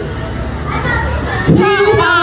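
Children chattering in a large room, then a song with a singing voice comes in loudly about one and a half seconds in.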